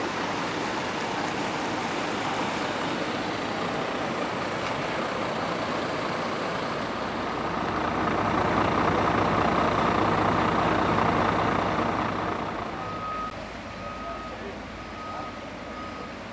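Heavy vehicle engine running with a steady rumble that swells for a few seconds in the middle, then a reversing alarm beeping about four times near the end.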